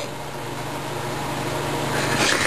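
A steady low hum with an even background hiss, and no distinct event.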